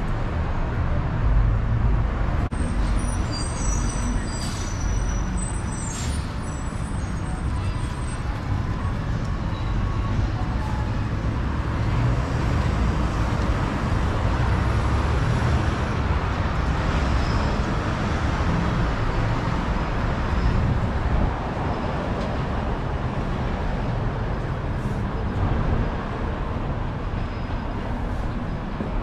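Steady city street traffic noise, a continuous rumble of passing cars and engines, with a few brief high-pitched squeaks a few seconds in.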